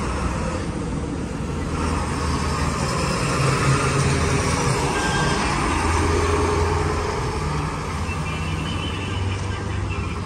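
Road traffic passing on a town street. A flatbed tow truck's engine grows louder and goes by in the middle, then the noise eases off.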